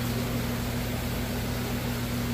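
Steady low hum with an even hiss, the constant running noise of large-aquarium pumps and filtration equipment.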